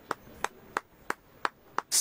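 One person clapping slowly: six single, sharp hand claps, evenly spaced at about three a second.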